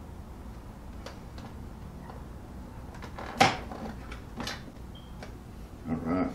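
Scattered plastic clicks and knocks from handling a countertop vacuum sealer and its bag, the loudest a single sharp click about three and a half seconds in.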